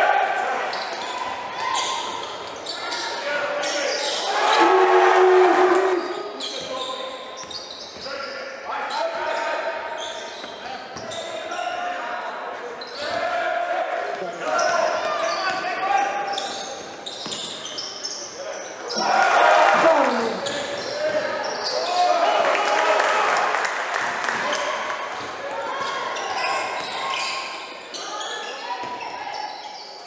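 Live basketball game sound in a large hall: the ball bouncing on the hardwood court amid the knocks of play, with voices calling out and echoing in the hall.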